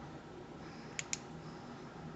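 Two light clicks in quick succession about a second in, from the pistol's slide and barrel being handled, over quiet room tone.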